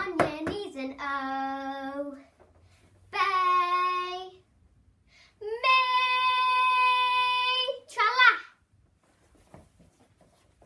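A young girl singing unaccompanied without words, holding three long notes that step up in pitch, the last held for about two seconds, followed by a short wavering note.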